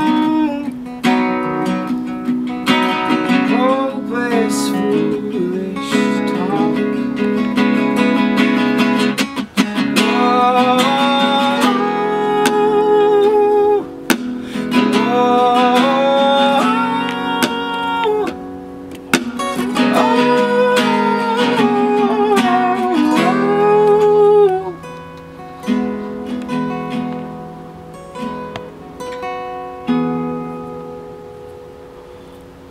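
Two acoustic guitars strummed and picked under a man singing long, sliding held notes. Near the end the singing stops and the guitars play on more softly.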